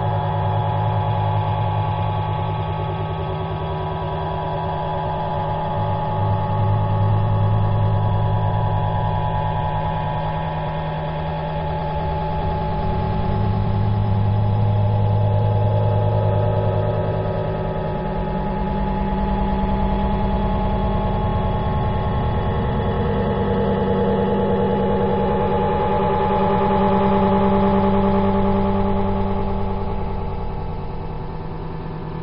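A steady drone of several sustained low tones that swell and ease every few seconds, in heavily compressed, dull-sounding low-bitrate audio.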